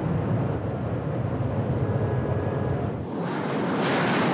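Inside the cabin of a Bentley Bentayga running at its limited top speed of about 260 km/h: a steady low drone of the twin-turbo W12 engine, tyres and wind. About three seconds in it gives way to a wider, hissier rush as the car is heard from outside.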